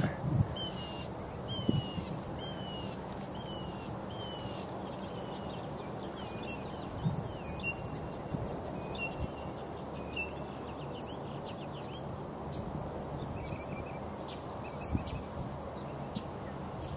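Birds calling outdoors: a run of about six short falling notes, roughly one a second, in the first few seconds, then scattered chirps through the rest, over a steady outdoor background hiss.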